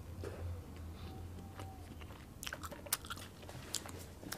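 Faint, close-miked chewing of a goldenberry (Cape gooseberry), with a few sharp wet mouth clicks in the second half.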